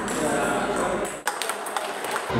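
Table tennis ball strikes, paddle and table: a quick run of sharp clicks in the second half.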